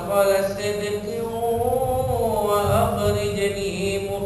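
Quran recitation in prayer, chanted by a single voice in slow melodic tarannum: long held notes whose pitch rises and falls.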